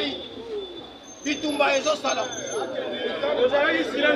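A man's voice speaking to a gathered crowd. It drops to a quieter stretch just after the start and comes back strongly about a second in.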